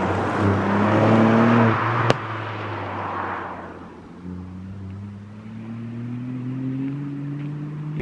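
A Ford Fiesta ST hot hatch passing on a wet road. Tyre hiss and engine note are loudest over the first three seconds, with one sharp click about two seconds in, then fade away. From about four seconds in, an engine note rises steadily as a car accelerates.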